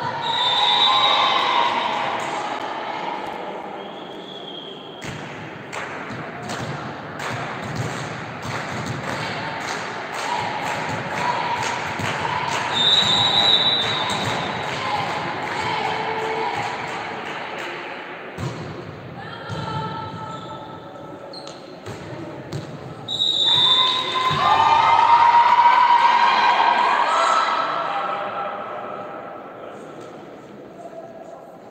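Girls' volleyball match in a large sports hall: players and onlookers shouting and cheering, loudest just after the start and again in the last third. In between come a run of sharp knocks of ball hits and feet on the court, and a short steady whistle tone about halfway through.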